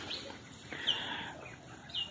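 A bird calling outdoors: three short, high chirps, one at the start, one about a second in and one near the end, over faint background noise.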